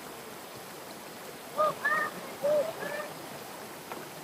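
Shallow rocky stream running steadily over a small cascade, with four or five short, high-pitched calls in a cluster from about a second and a half to three seconds in.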